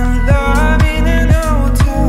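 Electro-pop music: a steady kick-drum beat about twice a second over a sustained bass, with a lead melody that slides in pitch, entering about a quarter second in.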